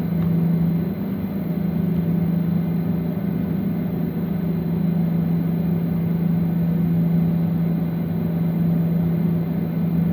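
Steady drone inside an airliner cabin while the plane stands still on the ground, with one strong low hum that does not change.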